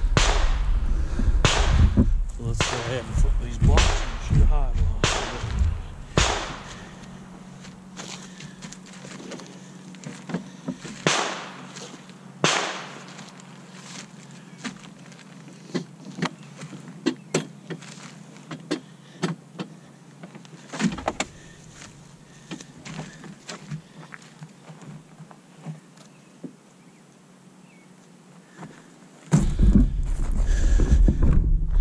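Ballistic gel blocks being handled and shifted on a folding table: a string of knocks and thuds, dense and loud for the first six seconds, then scattered and softer. A faint steady low hum runs underneath.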